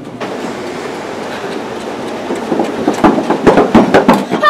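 Train sound effect: a steady rumbling run of railcars, breaking into loud, irregular clattering in the last second and a half.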